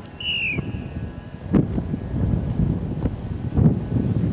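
Wind buffeting the microphone, with a short high falling whistle just after the start and a dull thud about a second and a half in as a rugby ball is kicked at goal.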